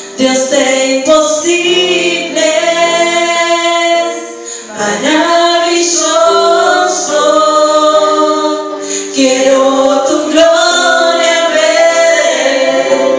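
Two women singing a Spanish Christian worship song together into microphones, holding long notes in phrases with brief pauses for breath about four and nine seconds in.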